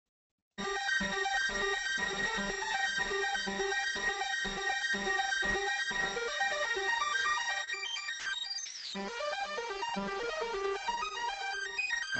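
Electronic track playing back from the studio setup: a pulsing synthesizer riff made on a CS-80 synth, starting abruptly about half a second in, with a high steady tone over it. About three-quarters of the way through it briefly thins out with a falling sweep, then carries on.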